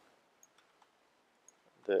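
A few faint, scattered clicks from computer keyboard and mouse use, four or so over a second and a half, followed by the start of a spoken word near the end.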